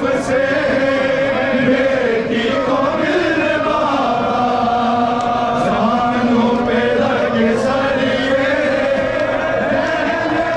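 A crowd of men chanting a Shia mourning lament (nauha) in unison, with long, sustained lines led through a microphone.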